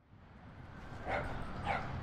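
Outdoor ambience fading in from silence, with a dog giving two short barks about a second in and again half a second later.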